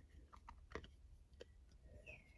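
Near silence with a few faint, short clicks of a thin clear plastic coaster cover being handled and pulled off a diamond-painting coaster.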